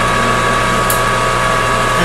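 Metal lathe running at a steady speed during single-point threading of a stainless steel rod, a constant hum with a steady higher whine. A brief high tick about a second in.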